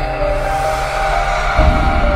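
Music with held, steady tones and a deep low hit about one and a half seconds in.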